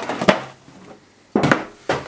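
Knocks and clatter of things being handled and set down on a table, among them a red metal tin: two knocks at the start and two sharper ones in the second half.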